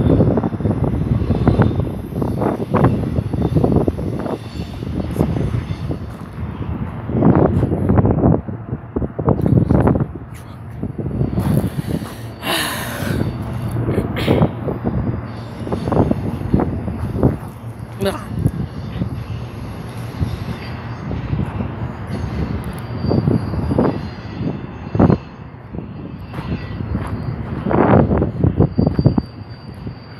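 Intermodal freight train rolling past, a continuous rumble of steel wheels on rail, broken by irregular loud surges of noise.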